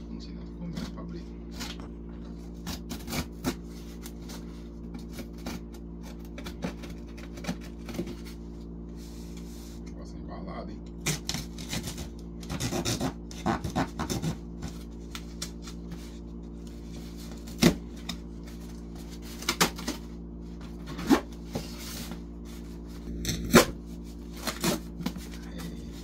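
A cardboard shipping box being handled and opened by hand: scratching, rubbing and sharp clicks of cardboard and packing tape, in bunches and single snaps. A steady low hum from a running air conditioner lies underneath.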